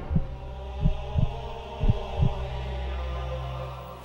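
Heartbeat sound effect over a low steady drone in a horror film trailer: doubled low thumps about once a second. The beats stop a little past halfway and the drone carries on.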